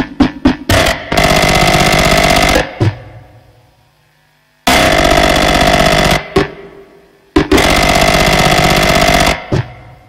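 Harsh noise music. A run of rapid pulses, about four a second, gives way to three loud slabs of dense distorted noise that start abruptly, hold for a second or two, then cut off and fade away, with single sharp hits in the gaps.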